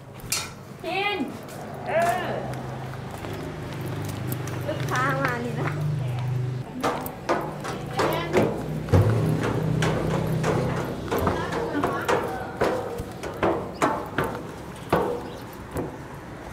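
Footsteps climbing a metal staircase, a run of fairly regular steps through the second half, with a few short bits of voices early on over a low steady hum.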